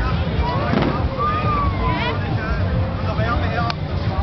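Busy night street: crowd voices over a steady low rumble of traffic, with one sharp crack shortly before the end.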